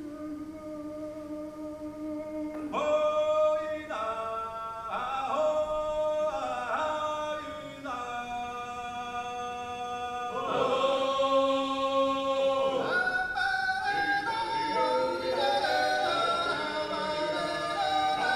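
Georgian male vocal ensemble singing polyphony a cappella, played back over a hall's loudspeakers. A lower voice holds a note at first, then the upper voices come in loudly about three seconds in, with the chords changing every second or so.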